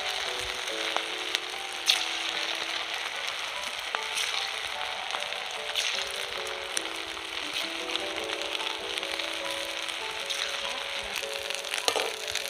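Rice-and-gram-flour batter frying in hot oil in an aluminium wok: a steady sizzle with a few sharp crackling pops. A slow melody of held notes plays over it.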